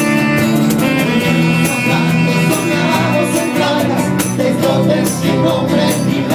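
Several nylon-string acoustic guitars strumming together in a steady rhythm, playing a passage of the song live.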